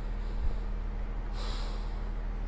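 A steady low electrical hum, with a dull low thump about half a second in and a short, sharp breath through a person's nose near the end.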